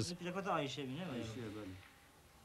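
A man's voice talking quietly, fading out near the end.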